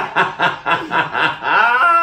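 Men laughing hard in quick rhythmic pulses, about four or five a second, ending in one drawn-out laugh that rises and falls in pitch.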